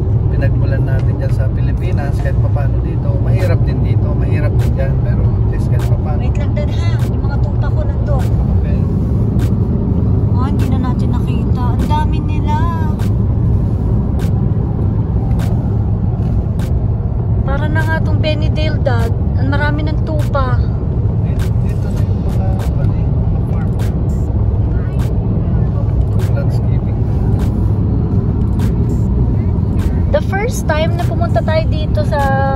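Steady low road and engine rumble inside the cabin of a moving car, with voices over it at times.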